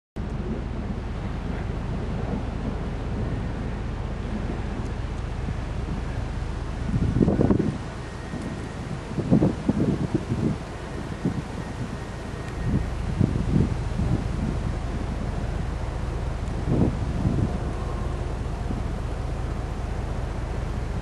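Wind buffeting the microphone with a steady low rumble. Several louder gusts come and go through the middle.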